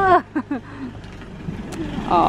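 Kitten mewing: a pitched cry that falls off right at the start, followed by two or three short, quick falling mews, then it goes quieter.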